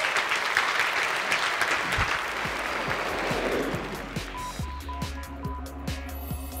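Audience applauding, the clapping fading away as outro music with a steady beat comes in about two seconds in.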